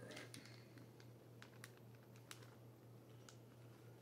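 Near silence with a faint low hum and a few light, scattered clicks and crinkles of a plastic cheese packet being handled.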